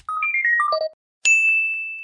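Closing jingle sound effect: a quick run of about six chime notes, mostly falling in pitch, then a moment later a single sharp bell-like ding that rings on and slowly fades.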